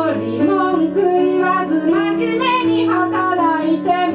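A woman singing live while accompanying herself on a keyboard, her voice moving over sustained piano-like chords that change every second or so.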